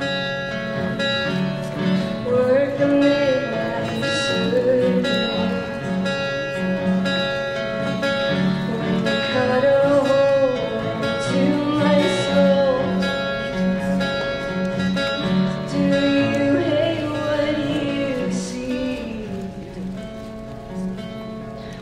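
Acoustic guitar picked in a steady, repeating pattern under a sustained sung melody.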